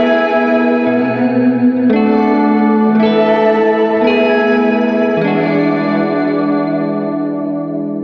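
Electric guitar chords played through a Catalinbread Cloak reverb and shimmer pedal, each chord washing into a long, shimmering reverb trail. The chord changes about once a second, then from about five seconds in the last chord is left ringing and slowly fades.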